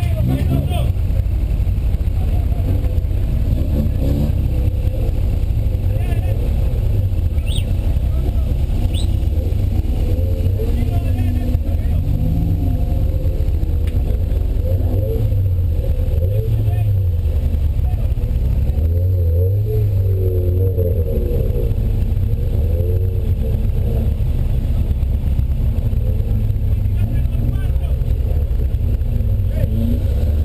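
A 1979 VW Golf GTI's engine idling steadily with a low rumble, heard from inside the car's cabin, with people's voices around it.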